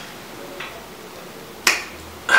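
A single sharp, short kiss smack near the end, over quiet room tone.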